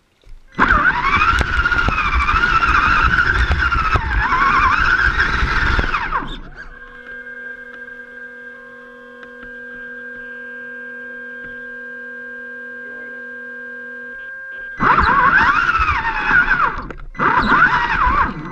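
An RC rock crawler's electric motor and gearbox whine as it drives, the pitch wavering up and down with the throttle, along with rough ground noise. Between the driving spells, while the truck stands still, a steady electric hum of several even tones is heard.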